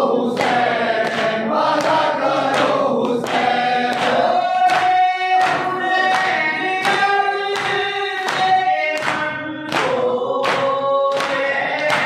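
Men's voices chanting a noha (mourning lament) together. Rhythmic chest-beating (matam) hand slaps land about twice a second, in time with the chant.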